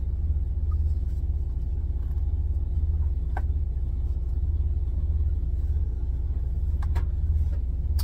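Steady low rumble of the Freightliner Cascadia sleeper truck idling, heard from inside the cab, with two faint knocks about three and a half seconds and seven seconds in as a microwave is pushed into a cabinet.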